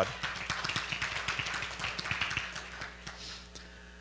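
Congregation applauding, the clapping thinning out and dying away over about three seconds.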